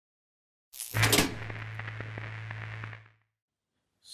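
Intro title-card sound effect: a short whoosh swelling into a hit about a second in, followed by a low steady hum with faint ticks that fades out about three seconds in.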